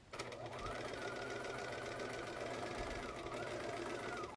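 Electric sewing machine running steadily as it top-stitches along the border of a cloth face mask, its motor hum and needle strokes even, with a brief slowing about three seconds in.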